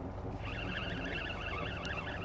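Spinning reel being cranked to bring in a hooked black sea bass: a fluttering whir that starts up again about half a second in. Under it is a steady low hum with wind on the microphone.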